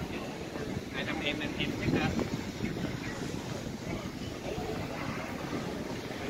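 Street ambience: wind rumbling on the microphone over steady traffic noise, with bystanders' voices chattering, loudest about a second or two in.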